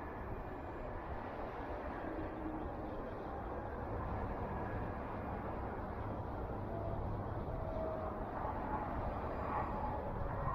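Faint, steady outdoor rumble of distant vehicles, slowly growing louder.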